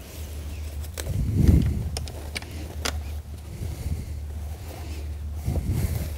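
Handling noise of a layout blind's metal frame bar being fitted by hand: a few light clicks of metal parts and a dull thump about a second and a half in, over a steady low hum.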